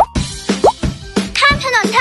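A Thai children's song starts up: two quick rising bloop sound effects, then a steady beat with a voice singing, about halfway through, the opening words about crossing the road.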